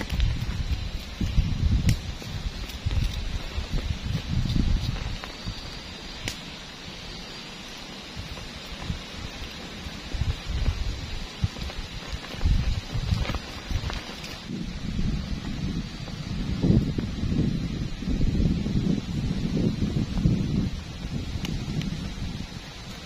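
Wind buffeting the microphone in uneven low gusts, heaviest at the start and again through the second half.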